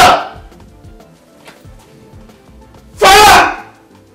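Two loud, short wailing cries from a man, one at the start and one about three seconds in, over quiet background music.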